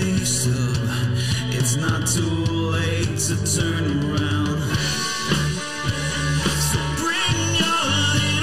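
Indie rock song with distorted electric guitar, a Reverend Double Agent played through Chase Bliss pedals into an Orange Dual Terror amp, over bass and drums, with sung vocals in an emo style.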